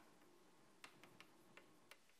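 Chalk writing on a blackboard: a handful of faint, sharp ticks and taps as the chalk strikes the board, over near silence.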